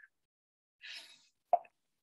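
Quiet, with a soft breathy rush about a second in, then a single short click about one and a half seconds in.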